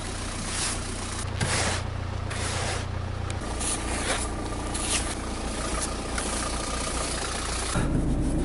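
Hand snow brush sweeping snow off a car's windscreen and body in repeated short scraping strokes, over a steady low hum.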